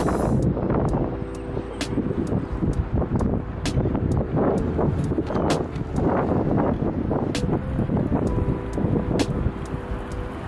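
Wind buffeting the microphone, over traffic going by on the road beside the walkway.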